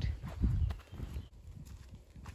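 Footsteps on a dirt forest track: a few low thuds in the first second, then fainter steps.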